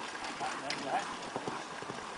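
Hoofbeats of a pony pulling a carriage at speed over an arena's sand surface, with voices in the background.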